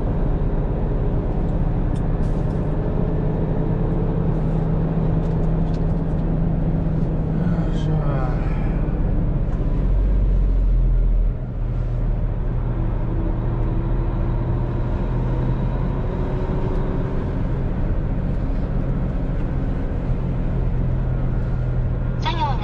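Heavy truck's engine running steadily, heard from inside the cab as it drives off. The low rumble swells about ten seconds in and drops away sharply a second later.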